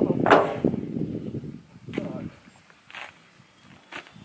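Indistinct talking between people, with one louder call about a third of a second in, then fading to a few brief sounds.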